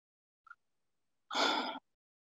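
A person sighs once: a single breathy exhale lasting about half a second, near the end, with a faint click shortly before it.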